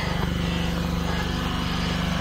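An engine running steadily at an even speed, a low hum that holds one pitch.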